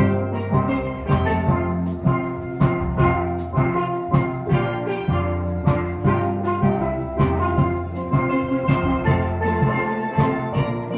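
Steel pan ensemble playing a tune together: the higher pans, struck with mallets, carry bright ringing melody notes over sustained low notes, with a steady beat of sharp strokes.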